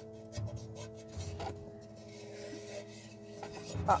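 Fingers rubbing and pressing masking tape firmly down onto a hollow craft pumpkin, a soft scuffing repeated several times. Quiet background music with held notes plays underneath.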